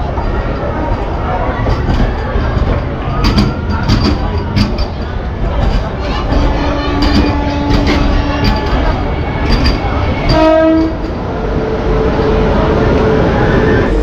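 Busy railway platform beside a train: a steady low rumble with scattered knocks and clatter and some background voices. A short horn-like blast sounds about ten seconds in.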